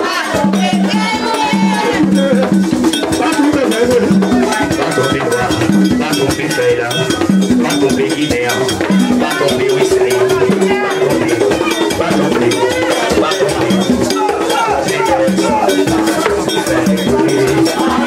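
Live Vodou ceremony music: singing into microphones over continuous fast percussion with a bell-like metallic beat and rattles.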